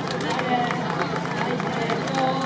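Quick, irregular footsteps and scuffs of dancers moving across a stage, over the chatter of a crowd.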